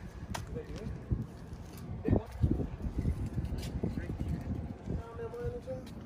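Handling noise from a handheld camera being moved about: an uneven low rumble with scattered knocks and clicks. Faint voices come in near the end.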